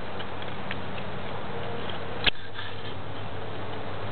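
Steady background hiss with one sharp click a little past halfway and a few faint, high ticks.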